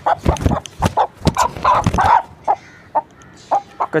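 Aseel rooster giving short, harsh squawks and clucks in quick succession, thinning to a few single calls in the second half. The owner says the moulting bird is in discomfort.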